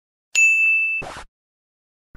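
Logo intro sound effect: a single bright ding that rings for about half a second, then a brief rushing noise that stops abruptly.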